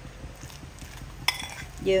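Metal spoon stirring and scraping cooked fish in a ceramic bowl, soft and low, with one sharp clink of the spoon against the bowl a little over a second in.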